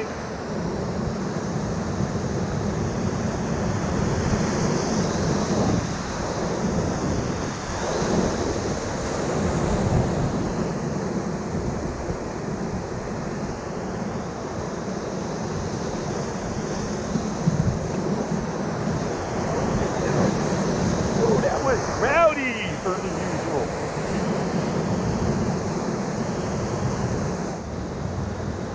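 Whitewater rapids rushing around an inflatable raft: a steady, even noise of churning river water.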